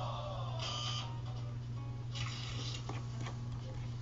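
Faint background music over a steady low hum, with two short, soft hissing noises.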